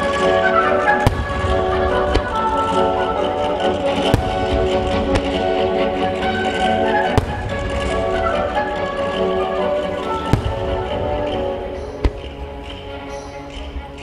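Orchestral-style music with a melody carries through, accompanying a fireworks display, and fireworks shells bang sharply five times, about every three seconds.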